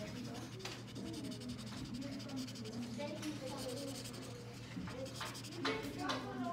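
Felt-tip marker scratching steadily over paper in quick strokes as a drawing is coloured in, with voices talking in the background.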